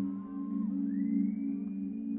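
Live band playing a sustained, drone-like ambient chord. About a second in, a high electronic tone slides upward and holds above it.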